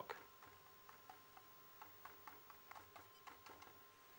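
Near silence with faint, irregular light taps, two or three a second, of a paintbrush dabbing thick acrylic paint.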